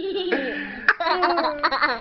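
A young child laughing hard in repeated fits, with a brief sharp click just before a second in.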